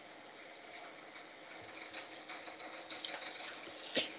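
Faint, even background hiss of a video-call audio line, with a few faint small ticks that become a little busier toward the end.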